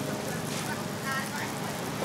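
Steady sizzle of burger patties and a sausage frying in oil on a flat-top griddle.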